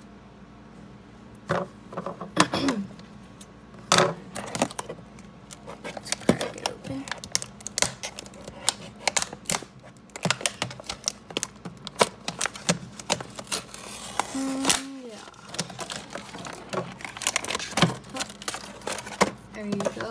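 Clear plastic blister packaging and a cardboard insert being handled and pulled apart: irregular crinkling and crackling with sharp clicks and snaps, densest about ten to fourteen seconds in.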